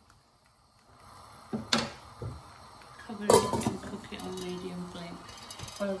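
Metal clanks on a stainless steel cooking pot: a few light knocks a couple of seconds in, then a loud clank with a ringing tone about three seconds in as the steel lid is set on the pot.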